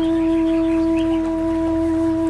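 Calm ambient music: a flute holds one long, steady note over a low sustained drone.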